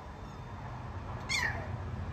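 A puppy gives one short, high-pitched cry that slides down in pitch, about a second and a half in, over a steady low background rumble.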